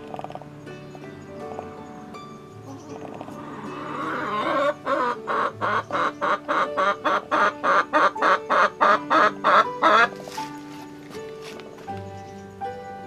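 A hen clucking in a quick run of short calls, about four a second, growing louder for several seconds before stopping about two seconds before the end, over background music.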